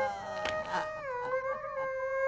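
A man crying out a long, drawn-out 'à' in grief, a wail that wavers at first and then holds one steady pitch.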